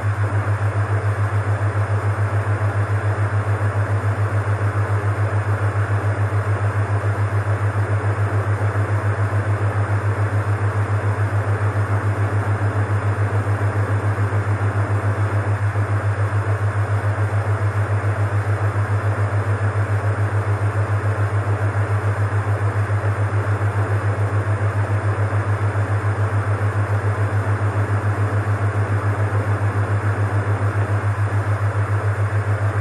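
Experimental electronic noise music: a loud, steady low drone throbbing in a fast, even pulse under a wash of hiss.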